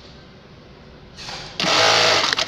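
Industrial electronic bar-tack sewing machine starting its stitching cycle about one and a half seconds in, running loud and fast as it tacks a belt loop onto denim jeans. A low steady hum comes before it.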